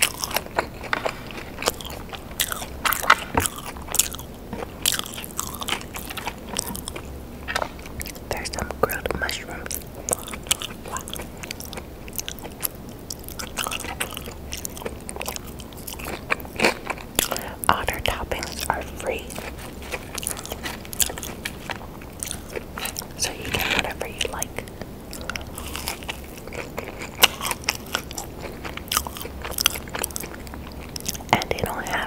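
Close-miked eating of a fast-food cheeseburger and fries: chewing and biting with wet mouth sounds and soft crunches, many short clicks and smacks throughout.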